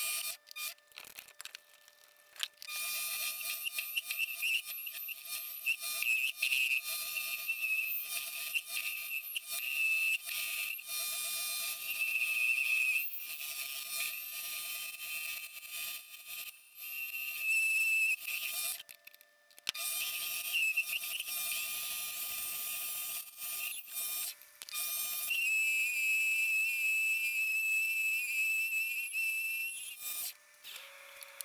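Mini lathe boring out an aluminium part with a boring bar: a high-pitched whine and hiss from the cut over the steady tones of the lathe's drive. The cut starts a couple of seconds in and breaks off briefly about two-thirds of the way through.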